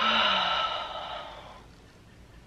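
A woman's long, breathy sigh as she stretches with her arms overhead. It starts suddenly with a little voice in it and fades away over about a second and a half.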